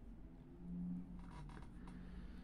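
Faint scratchy rustling of a metal crochet hook drawing thread through stitches, with a few light clicks, over a low steady hum.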